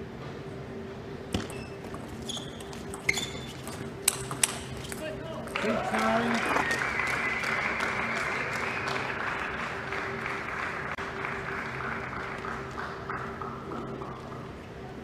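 A table tennis ball struck back and forth in a short rally, a handful of sharp clicks off the rackets and table. About five and a half seconds in, as the point ends, a shout rings out, followed by several seconds of cheering that slowly fades.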